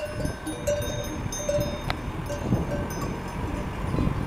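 Bells worn by a grazing flock of sheep, clanking irregularly as the animals move: many small bells ring at different pitches, with one sharper clank about two seconds in, over a steady low rumble.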